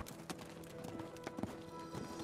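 Documentary soundtrack music with held notes, over a scatter of short, light clicks.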